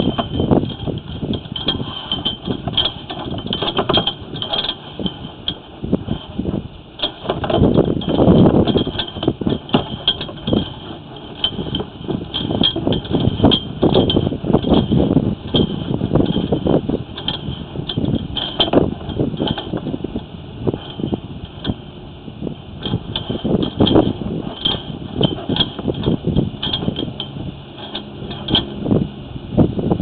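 Sewer inspection push camera being fed down the line: the push-rod cable and reel rattle and click irregularly as the cable pays out, with a fast, uneven run of small ticks throughout.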